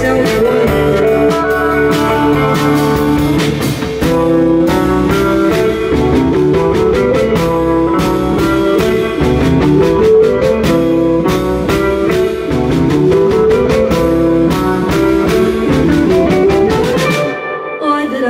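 Live band playing an instrumental passage: electric guitar over a drum kit keeping a steady beat. The band breaks off briefly near the end.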